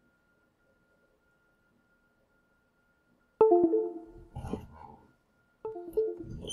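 Two short electronic chimes about two seconds apart, each a quick falling pair of notes, like a computer's device-connect or disconnect sound. A brief rustle of handling comes between them, and a faint steady high whine runs under the quiet start.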